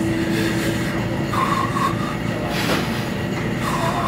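A loud, steady rumbling noise with brief high squeals, about a second and a half in and again near the end.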